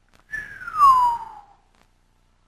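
A person whistling one long falling note that glides from high to low over about a second.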